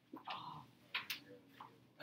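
A few faint, sharp clicks, two of them close together about a second in, over quiet room sound.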